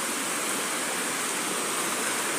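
Steady rush of a fast, shallow stream tumbling over rocks and boulders.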